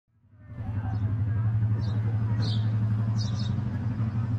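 A steady low engine hum fades in over the first half second and holds, with a few short high chirps about once a second.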